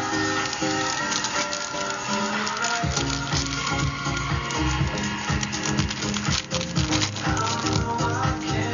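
Background pop music with a beat; a bass line comes in about three seconds in.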